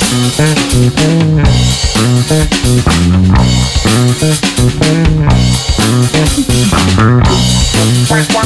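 Instrumental psychedelic rock: guitars, bass guitar and drum kit playing together, loud and dense.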